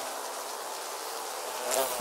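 Housefly buzzing, a steady drone.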